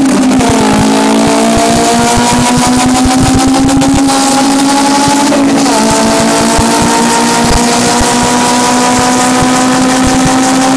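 Built Honda B20 VTEC four-cylinder in a gutted Civic hatchback, heard loud from inside the cabin, pulling hard at full throttle. Its pitch climbs steadily through the gears, with upshifts just after the start and about five and a half seconds in.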